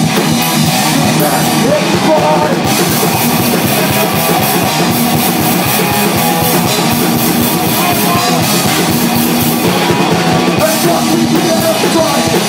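A hardcore punk band playing live with distorted electric guitars, bass and drums in a loud instrumental stretch without vocals, recorded close on a phone's microphone.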